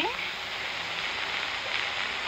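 Steady hiss of an early-1930s film soundtrack between lines of dialogue, with the last word of a line fading out at the very start.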